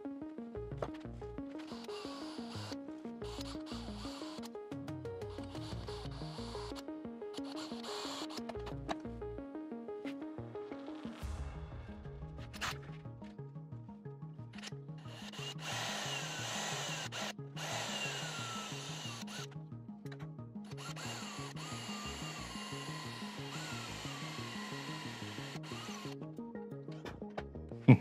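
Quiet background music with a steady beat, over which a cordless drill bores into a wooden guitar body in several short spells, its motor whine falling in pitch as each run slows.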